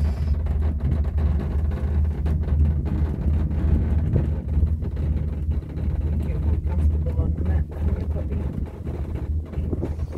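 Steady low rumble inside a moving cable-car gondola, with wind buffeting the microphone and scattered brief knocks and rustles.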